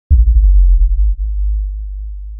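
A deep, loud cinematic bass boom that hits suddenly and slowly fades, with a rapid flutter in its first second.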